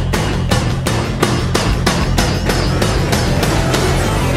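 Loud, dense heavy rock band music: a full, distorted instrumental passage with a steady beat of hard, evenly spaced drum hits.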